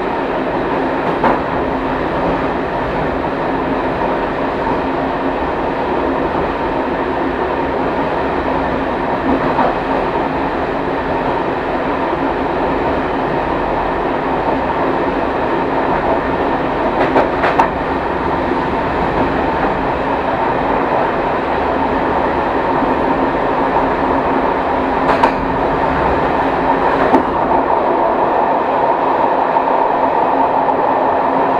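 A train running along the line, heard from inside the driver's cab: a steady rumble and hum of the moving train, with a few sharp clicks from the wheels at intervals, growing slightly louder toward the end.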